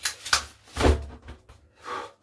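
A black folding umbrella opened by hand, with a sharp snap and rustle of canopy fabric in the first half-second. Then comes a loud breathy exhaled "whew".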